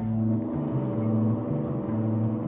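Live rock band playing a loud, droning low riff of held electric guitar and bass notes that change about every half second, with no clear drum hits.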